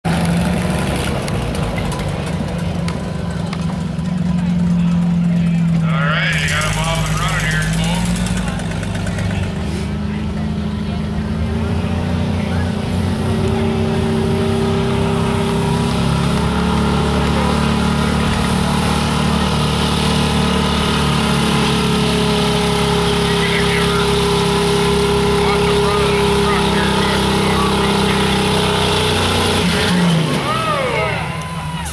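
Pickup truck engine running hard under load as it drags a weight-transfer pulling sled, a loud, steady drone held at high revs throughout. A voice is heard briefly about six seconds in.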